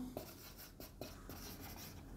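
Marker pen writing on a whiteboard: a few faint, short strokes of the felt tip on the board.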